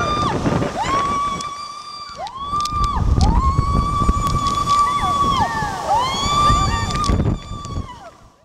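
People screaming on a water slide: a string of long held screams, each rising quickly to a steady high pitch and dropping away at the end, some overlapping, over the rush of water.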